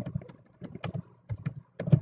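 Typing on a computer keyboard: a quick, uneven run of keystrokes, about four a second.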